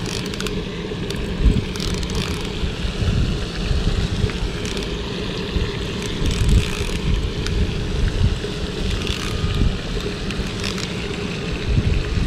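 Wind buffeting the microphone in uneven gusts, a steady low rumble with a few faint clicks over it.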